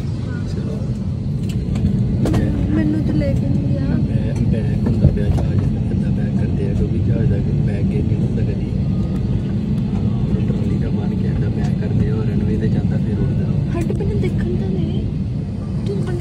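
Steady low rumble in the cabin of a narrow-body jet airliner taxiing on the ground, from the jet engines and the rolling of the aircraft, with faint voices in the cabin.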